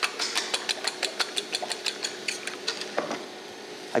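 A fork whisking eggs and milk in a ceramic bowl: quick, even clicks against the bowl, about six a second, that slow and stop about three seconds in.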